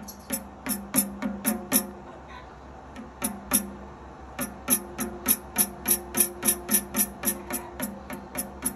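Tambourine's metal jingles rattling in a series of sharp strikes: a loose group of five or six near the start, a pause, then a steady run of about three strikes a second from around four and a half seconds on.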